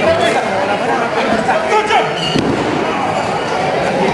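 Spectators shouting and chattering in a large hall, with a few thuds of wrestlers hitting the ring canvas.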